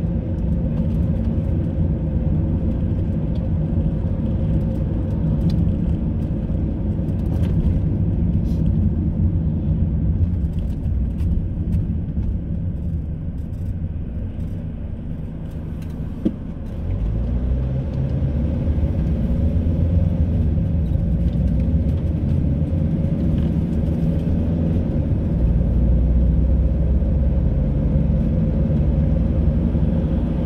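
Car engine and road noise heard from inside the cabin: a steady low rumble that eases off a little past the middle, then builds again and stays louder as the car picks up speed onto a dual carriageway.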